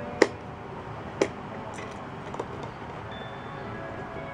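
Plastic pop-up baby toy being worked by hand: two sharp plastic clicks about a second apart, then a few lighter taps as the buttons and pop-up lids are pressed.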